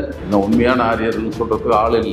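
A voice speaking over background music that holds steady notes.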